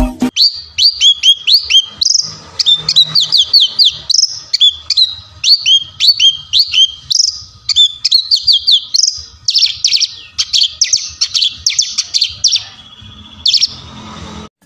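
A branjangan (Horsfield's bush lark) singing in its cage: a rapid string of high, down-slurred chirps, several a second. About two-thirds of the way through the song turns into faster, denser trilled notes, then stops, with one last short burst near the end.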